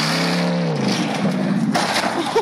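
Old full-size sedan's V8 engine running hard off-road. The engine note holds and then drops a little just under a second in, under a loud rushing noise.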